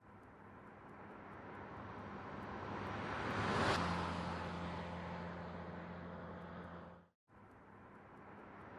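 A car's engine and tyres as it pulls out of a smashed concrete fence and drives away. The sound swells to a peak about halfway through, then fades, and breaks off for a moment near the end.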